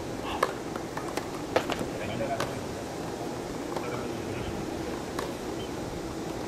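Tennis ball struck by rackets in a rally: a few sharp pops roughly a second apart, the loudest about one and a half seconds in, then fainter ones spaced further apart, over steady background noise.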